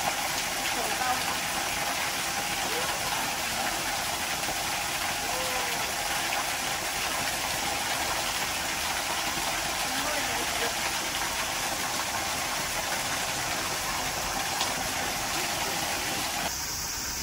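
A small waterfall: a thin stream of water falling from a spout onto rocks, making a steady, unbroken rushing splash.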